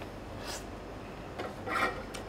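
Hands rubbing and brushing against each other and the tabletop, greasy from eating chicken by hand. There is a short scrape about half a second in and a louder scuff near the end.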